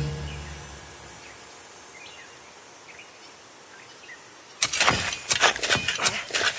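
A cartoon soundtrack's quiet nature ambience with a few faint, short bird-like chirps as the music dies away. About four and a half seconds in, a sudden loud, rapid clattering noise breaks in.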